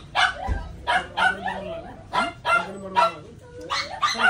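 A dog barking repeatedly in short barks, about two a second.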